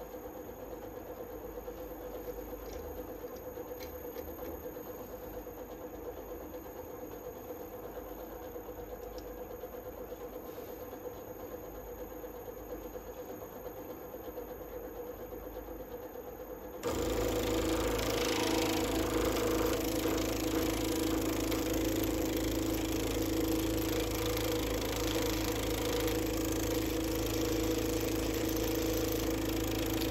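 Wood lathe fitted with a Sorby RS-3000 ornamental turning device: a faint steady hum at first. About halfway through, the machinery switches on with a sudden jump to a louder, steady motor hum that carries a couple of clear tones.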